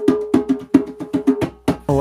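Djembe played by hand in a quick run of sharp strokes, about six a second, each with a short ringing tone. The drumming stops near the end.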